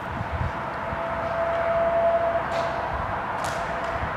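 Hand-held orange smoke grenade hissing steadily as it burns, with a thin whistling tone running through it that is loudest in the middle. Two brief sharper hisses come near the end.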